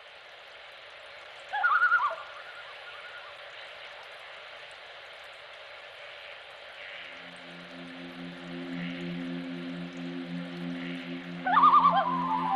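Common loon giving its wavering tremolo call, a brief burst about a second and a half in and again near the end. A low sustained musical chord fades in about halfway through, over a steady hiss.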